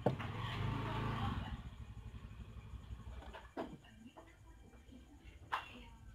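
A few sharp clicks and taps of a screwdriver and small speedometer parts being handled on a wooden table. A brief low, noisy rumble fills the first second or two.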